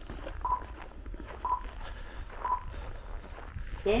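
Footsteps crunching on packed snow at a walking pace, with three short electronic beeps about a second apart.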